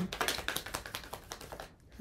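Tarot cards being shuffled by hand: a quick run of light clicks and taps as the cards slide and knock against each other, thinning out and stopping about a second and a half in.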